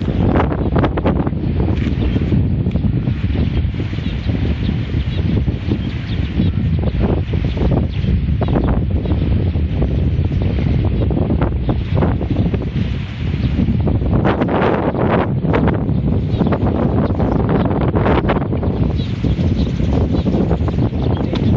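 Wind buffeting a phone's microphone: a steady, loud low rumble, with scattered short clicks throughout.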